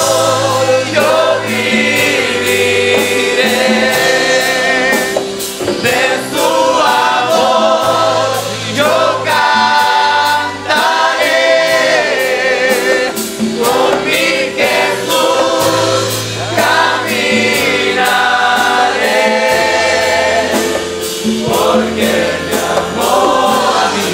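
Gospel hymn sung by a choir, with a man's voice leading at the microphone, over instrumental accompaniment with held bass notes and a steady beat.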